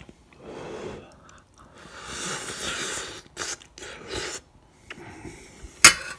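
Mouth noises of someone eating instant noodles: several rough slurping and breathing sounds, then a single sharp clink of a metal fork against a stainless steel saucepan near the end.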